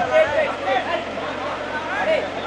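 Indistinct men's voices talking, softer than the microphone speech just before, with a little background chatter.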